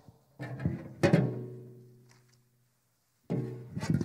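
A low string note on an acoustic guitar, struck once with a knock about a second in, ringing out and dying away over about a second and a half. Speech starts near the end.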